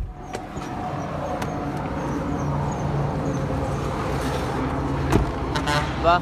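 A car door latch clicks open, and a steady engine and street-traffic noise comes in as the door swings out; a single knock about five seconds in, likely the door being shut.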